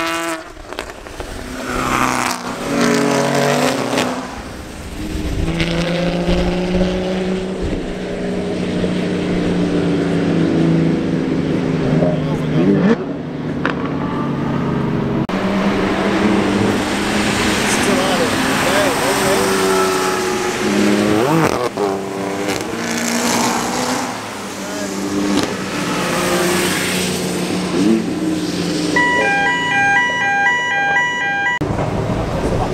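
Porsche Cayman GT4 flat-six engines running hard on track as the cars drive by. The pitch climbs and drops again and again through the gear changes.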